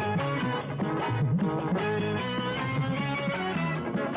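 Dangdut band music led by an electric guitar melody over a moving bass line.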